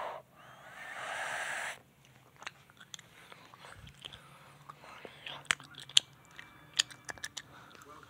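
A breathy, whispered whooshing from a person's mouth that stops sharply about two seconds in. It is followed by scattered light clicks and ticks, like plastic toy bricks being handled.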